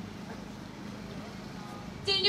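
A steady low engine hum, like an idling vehicle, over a faint outdoor background.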